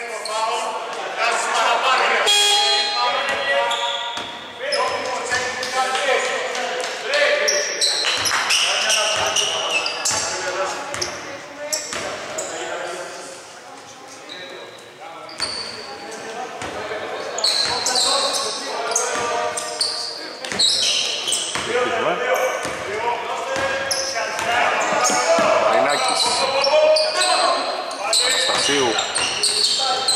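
Basketball bouncing on a hardwood court as it is dribbled, echoing in a large hall, with voices calling out throughout.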